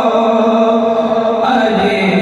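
A man singing a naat, an Urdu devotional hymn, solo into a microphone, holding one long note that moves to a new note about one and a half seconds in.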